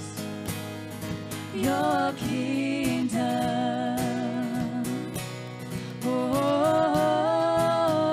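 Live worship band: women's voices singing a slow held melody with vibrato over acoustic guitar and drums, the line stepping up in pitch about six seconds in.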